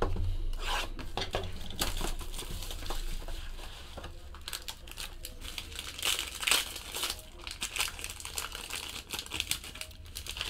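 Gold foil trading-card pack being torn open and crumpled by hand: a run of crinkling and crackling, with louder bursts about six and a half seconds in and again near the end.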